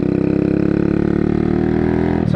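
125cc motorcycle engine running while riding along, its pitch easing slightly downward as the revs drop.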